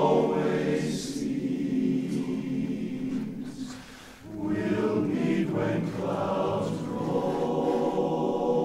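Men's barbershop chorus singing a cappella in close four-part harmony. The sound dies away briefly about four seconds in, then the full chorus comes back in with sustained chords.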